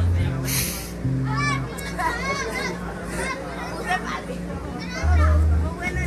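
Electric bass guitar playing a few long, low single notes, the loudest about five seconds in, over the chatter and shouts of a crowd in which children's voices stand out. There is a short hissing burst about half a second in.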